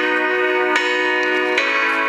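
Music playing over a car stereo tuned to FM radio: held chords that change twice.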